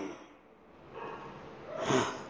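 A man's quick, audible in-breath near the end of a short pause in his speech, after a faint hiss of breathing.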